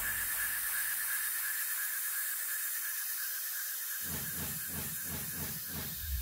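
Steady hiss with a faint high whine held under it. About four seconds in, a low pulsing sound effect with repeated falling sweeps starts.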